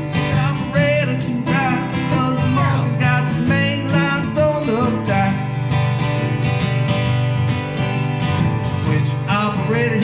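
Two acoustic guitars playing an upbeat country-blues instrumental break with a steady strummed rhythm.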